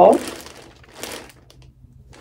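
Plastic mailer bag crinkling as it is handled, faint, with a brief louder rustle about a second in.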